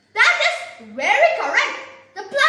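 A boy's voice: two loud drawn-out vocal sounds, the second sliding up in pitch, with no clear words.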